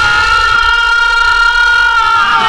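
A singer holding one long, steady high sung note in Odia pala devotional singing.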